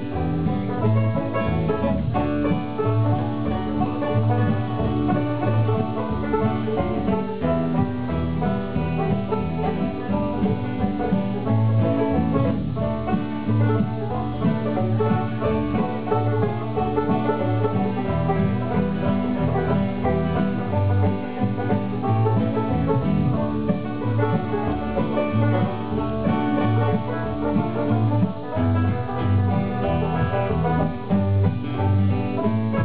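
Bluegrass band playing a tune, with banjo picking over acoustic guitar and bass guitar.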